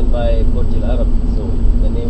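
Car cabin rumble from a moving car, with voices talking indistinctly over it.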